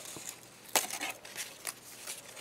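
Die-cut paper craft pieces handled by hand: soft paper rustling with a few short, sharp clicks.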